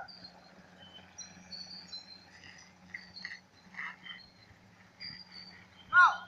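Faint outdoor ambience between drill commands: brief high chirps scattered throughout, a few soft shuffling sounds, and a low steady hum underneath.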